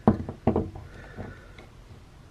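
Handling noise from a plastic action figure held in the hands: a few short knocks and taps, the loudest right at the start and about half a second in, then fainter ones.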